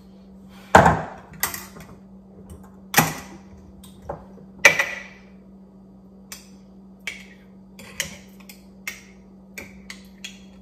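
Metal spoon clinking against a glass jar while scooping out thick sea moss gel. There are four sharp clinks in the first five seconds, the one about a second in the loudest, then lighter taps, over a faint steady hum.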